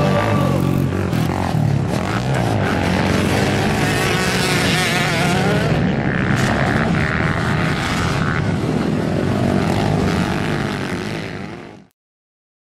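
Sport quad (ATV) engine revving up and down as it races over a dirt motocross track and jumps, with the pitch rising and falling through the gears and throttle. The sound fades out near the end.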